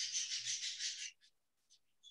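A brief rustling, rubbing noise lasting about a second, pulsing a few times, then near silence.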